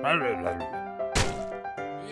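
Cartoon background music with a short falling vocal sound at the start and a single sharp cartoon thunk sound effect about a second in.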